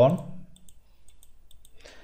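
A few faint, scattered clicks from a computer mouse.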